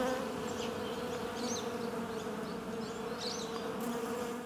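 Bees buzzing in a steady, even drone, a recorded sound effect laid under the show's title card.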